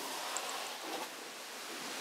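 Faint, steady rustling of a cloth being rubbed along a tile grout line, with a couple of tiny ticks.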